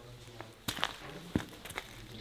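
Footsteps of hiking boots on a wet, muddy tunnel floor strewn with gravel: a few separate, uneven steps.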